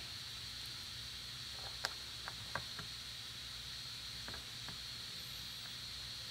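Quiet room tone: a steady hiss with a faint high-pitched tone, broken by a few faint clicks and taps as a small IMU sensor board and its wires are handled at the table edge.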